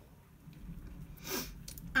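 A quiet pause broken by one short intake of breath about one and a half seconds in, followed by a few faint clicks.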